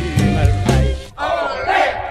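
Recorded dance-band music with a Latin rhythm that breaks off about a second in, followed by a burst of many voices shouting together.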